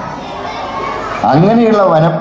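Chatter of many children's voices echoing in a large hall, then a man's voice over a microphone and loudspeakers comes back in about halfway through.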